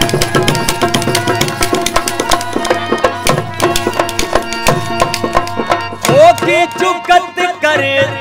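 Sindhi folk music: a fast, dense percussion rhythm from wooden clappers and drum over the steady drone of a tamboro, with a male voice coming in to sing about six seconds in.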